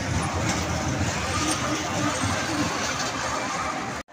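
A fairground track ride running, a steady mechanical rumble of the cars on their rails, with crowd voices mixed in.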